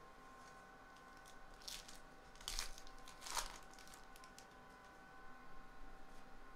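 A Topps Archives baseball card pack's wrapper being torn open and crinkled by hand, in a few short bursts around the middle.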